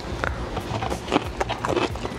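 Crunching from a fresh cucumber slice being bitten and chewed: a few short, crisp clicks spread through the moment.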